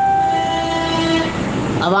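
A sustained chord of steady electronic tones that starts suddenly and fades out over about two seconds, typical of a news-bulletin transition sting.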